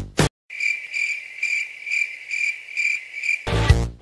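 Crickets chirping, a high pulsing chirp about three times a second, after the background music cuts off abruptly; the music starts again near the end.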